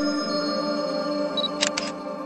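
Short musical logo sting of held, chime-like tones, with a camera-shutter click sound effect near the end: two quick clicks about a fifth of a second apart.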